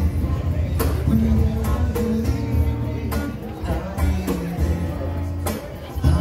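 Live acoustic guitar and conga drums playing together: strummed chords with held notes and hand-struck drum hits.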